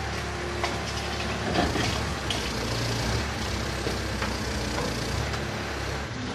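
Backhoe loader's diesel engine running steadily while it loads a dump truck, with a few short knocks and clatters from the load about half a second, one and a half seconds and two and a quarter seconds in.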